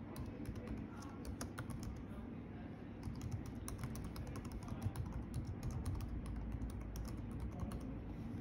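Rapid, irregular clicks of keys being typed on a keyboard as an email address is entered.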